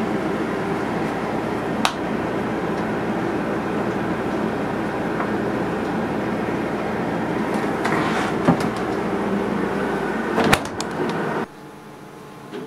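Refrigerator running with a steady hum while its door stands open, with a few light clicks and knocks as an aluminium beer can is lifted off the shelf and handled. The hum stops abruptly near the end, leaving quiet room tone.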